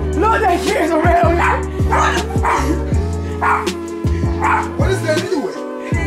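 Music with a deep bass that slides down in pitch over and over, with a dog barking and yipping in short bursts over it.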